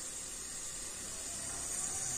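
Tomato masala sizzling steadily in a pressure cooker on the stove: a faint, even hiss.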